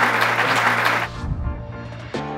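Audience applauding, dying away about a second in, over background music holding a steady low note.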